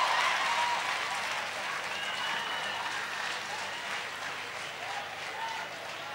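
Congregation applauding, the applause slowly dying away, with faint voices underneath.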